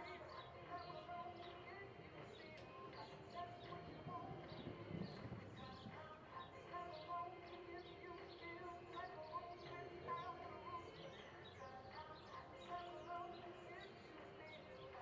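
Quiet arena ambience: small birds chirping again and again over faint background music and distant voices.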